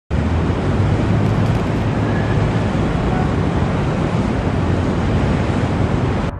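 Steady, even roar of wind and city traffic rumble, with a deep low hum underneath and no change in level.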